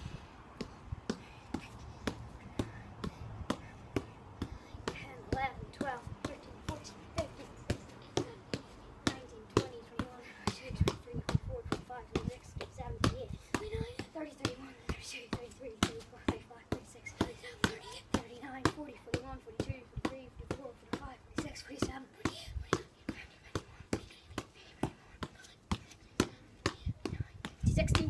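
A football kicked up again and again off a school shoe: a steady run of sharp taps, about two to three a second, as the ball is kept in the air.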